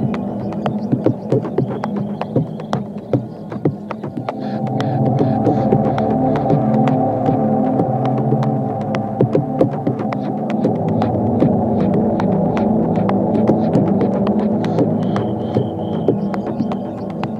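Ambient techno track: a dense, layered synth drone with sharp clicks scattered through it. About four and a half seconds in, the drone swells fuller and deeper.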